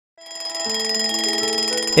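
A cartoon alarm clock's bell ringing, over soft background music that fades in over the first half second.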